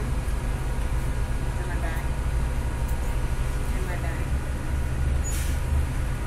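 Interior of a moving city bus: a steady low rumble of engine and road noise, with a brief hiss near the end.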